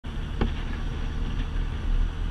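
Touring motorcycle running steadily at road speed, its engine drone mixed with wind rush on the camera, with one short click about half a second in.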